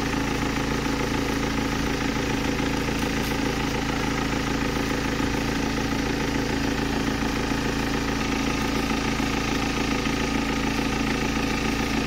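BMW 320d four-cylinder diesel engine idling steadily with the bonnet open. The owner took the loud engine noise for an unattached airbox, but with its intake wrapped in cling film or unwrapped the sound is no different.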